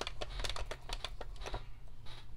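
Stampin' Cut & Emboss Machine being hand-cranked as a die-cutting plate sandwich feeds through its rollers: a run of irregular light clicks.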